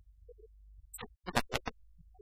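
A few short, sharp clicks and taps clustered about a second in, over a low steady room hum.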